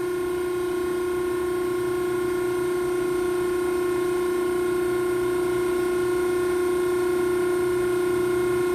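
Hydraulic pump and motor of a Betenbender 6 ft × 3/8 in hydraulic squaring shear idling with no cut made: a steady whine, one strong tone with fainter higher tones above it, growing slightly louder.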